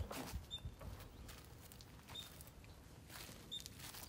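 Faint footsteps and scuffing clicks, with a short high-pitched chirp repeating every second and a half or so.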